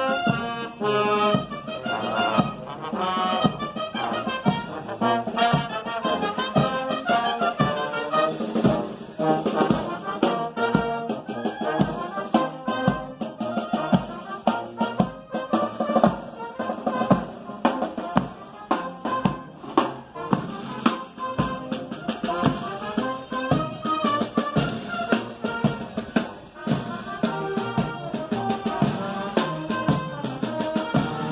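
Military marching band playing a march: brass instruments such as trombones and trumpets carrying the tune over a steady drum beat.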